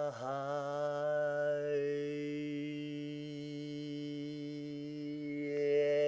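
A man's voice holding one long chanted note at a steady low pitch. It breaks and restarts once right at the start, the vowel brightens about two seconds in, and it swells louder near the end.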